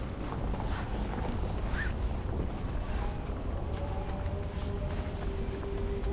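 Wind on the microphone, a steady low rumble, with footsteps on stone paving. Faint held tones come in about halfway through.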